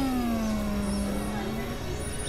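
Experimental electronic noise music from synthesizers: a pitched tone slides slowly downward in pitch over a dense, noisy drone with low rumble and high hiss.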